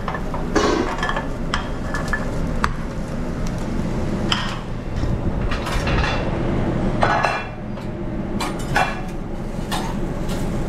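Pans, metal utensils and a plate clinking and knocking at a commercial stove and griddle, in scattered short strikes about once a second over a steady low kitchen hum.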